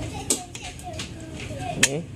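Circuit boards and wiring of a Behringer FBQ3102 graphic equalizer being handled inside its open sheet-metal case: two sharp clicks, one about a third of a second in and a louder one near the end.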